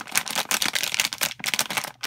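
Metallised anti-static bag holding a PCI network card crinkling and crackling as it is handled, in a dense run of irregular crackles.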